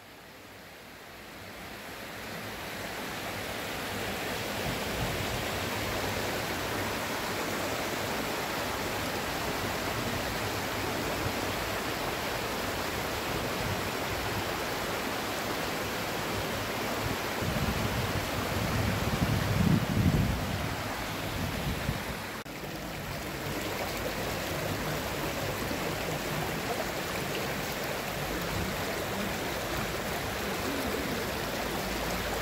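Shallow stream rushing over a stone-paved bed and small riffles: a steady rush of water that fades in over the first few seconds. A low rumble swells for a few seconds past the middle, and the sound dips briefly soon after.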